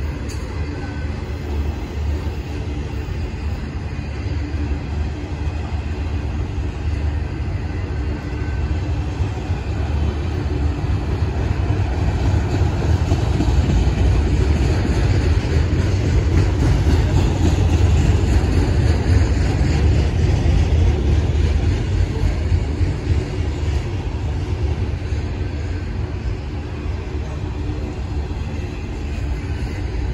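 Autorack freight cars rolling slowly past on the rails: a steady low rumble of wheels and car bodies. The rumble swells about halfway through and eases off again toward the end.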